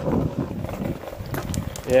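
Wind rumbling on a handheld camera's microphone, fading after about a second, with a few faint clicks near the end.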